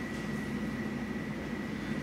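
Steady low room hum and rumble in a pause between spoken lines, with a faint, steady high-pitched tone running through it.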